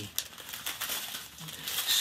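Clear plastic bags of diamond-painting teardrop drills crinkling as they are handled and folded.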